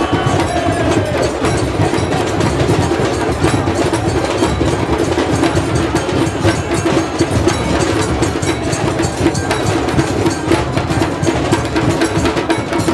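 Music with percussion playing steadily.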